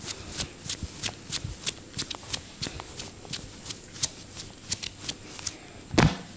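Hands massaging a man's shoulders and neck: quick, soft rubbing and patting strokes on skin and T-shirt fabric, about four a second.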